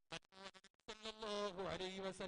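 A break of near silence for about the first second, then a man's voice resumes in a drawn-out, sing-song delivery of a religious speech, its notes held long.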